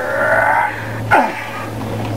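A person's wordless voice: a sound held for over half a second at the start, then a short sound falling in pitch a little over a second in, over a steady low hum.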